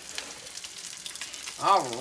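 Salmon croquette patty frying in hot oil in a skillet: a steady sizzle with fine crackling.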